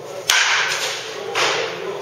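A baseball bat strikes a ball off a batting tee with a sharp crack that rings and fades quickly. A second, slightly softer impact follows about a second later.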